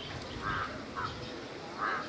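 A crow cawing outdoors, about three short harsh caws in two seconds.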